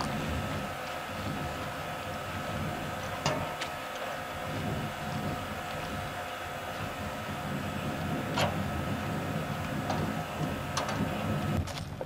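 Boat motor running steadily at low speed, a constant low rumble with a faint held whine above it and a few light clicks.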